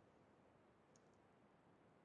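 Near silence: faint room tone with two faint clicks about a second in.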